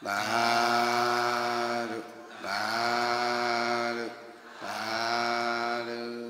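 A man's voice chanting three long, drawn-out notes at a steady pitch, each about two seconds with a short break between, in the threefold Buddhist call of approval 'sadhu, sadhu, sadhu' given at an offering to a monk.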